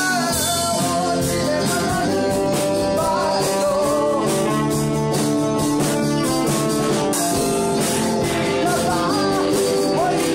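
A small band playing a song live in a room: a male voice singing over electric guitar, saxophone and a drum kit keeping a steady beat.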